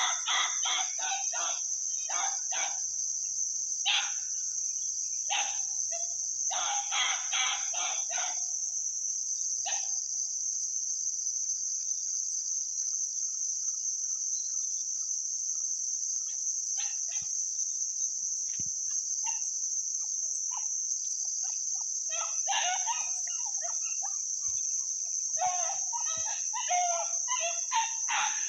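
Chicken calls coming in short clustered bursts, loudest near the start and again near the end, over a continuous high-pitched insect drone.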